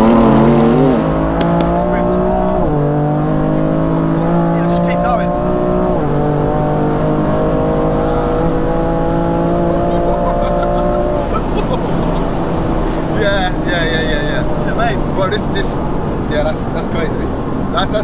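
Tuned BMW M2 Competition's twin-turbo 3.0-litre straight-six, fitted with upgraded TTE turbos for about 710 hp, heard from inside the cabin under full throttle. The engine pitch climbs through each gear, with three upshifts where it drops sharply before climbing again. After the third shift the engine eases off as the driver lifts.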